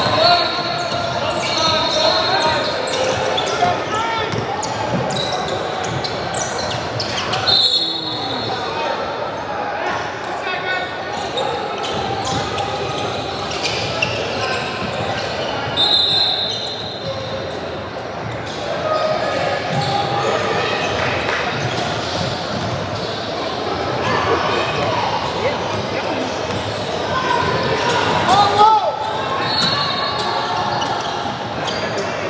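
Basketball game in a large, echoing gym: a ball bouncing as it is dribbled, shoes and footfalls on the hardwood, and indistinct voices from the court and benches. A referee's whistle blows three times, each blast about a second long: at the start, about eight seconds in, and about sixteen seconds in.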